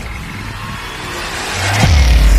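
Intro sound effect of a vault door unlocking: a rumbling, whooshing noise that swells steadily louder, ending in a deep boom near the end.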